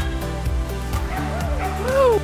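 Pembroke Welsh corgi barking a few times in the second half, the last bark the loudest, over steady background music.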